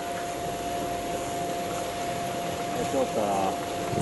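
Steady hiss of outdoor background noise with a constant thin hum running under it; a faint voice calls briefly about three seconds in.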